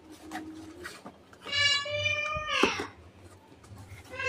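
A cat meowing once, long and high-pitched: the call starts about a second and a half in, holds level and then drops away at the end. Faint crinkles of a cardboard box being handled come before it.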